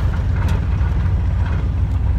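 Steady low rumble of a truck driving on a rough dirt road, heard from inside the cab: engine and road noise, with one light click about half a second in.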